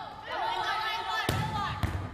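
A player's drawn-out, high-pitched shout echoing in a gym, then two sharp smacks of a volleyball being struck, about half a second apart near the end.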